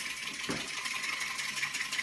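Steel wire brush scrubbed hard and fast back and forth across a cabinet door coated in shellac-based primer: a continuous, harsh, high-pitched scratching.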